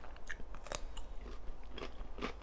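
Close-miked crunchy biting and chewing of a raw cucumber wedge: a string of crisp crunches, the loudest a little under a second in.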